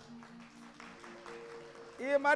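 Faint held instrumental notes, a few steady tones sustained under light, scattered clapping.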